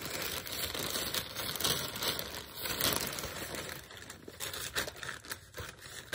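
Plastic poly mailer bag crinkling and rustling irregularly as a hand rummages inside it and draws out a small cardboard box, dying down somewhat near the end.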